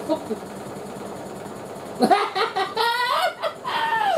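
About halfway in, a shrill, high-pitched squealing voice sounds for about two seconds, wavering up and down and then gliding down in pitch at the end.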